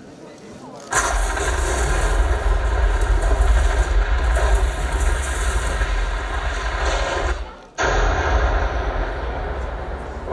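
Loud, steady rumbling sound effect with heavy deep bass, played over a theatre sound system; it starts abruptly about a second in, cuts out for a moment near the end, then comes straight back.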